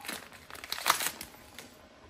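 Thin plastic packaging bag crinkling in a few short bursts as it is pulled off a steel part, loudest about a second in.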